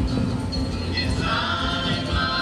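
Dance music with a group of voices singing over a steady low accompaniment, the voices coming up clearly from about a second in.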